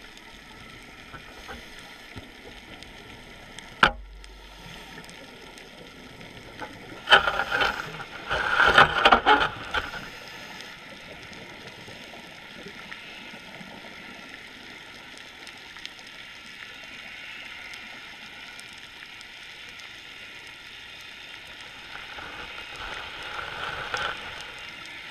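Underwater recording through a camera housing: a steady hiss with faint steady tones, a sharp knock about four seconds in, and loud rushing bursts from about seven to ten seconds in.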